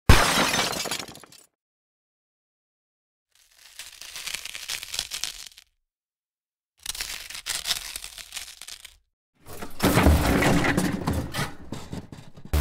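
Crackling and snapping of a burning plastic-and-diecast model car, heard in four separate bursts with silences between. The first starts with a sharp hit and dies away, and the last is the loudest.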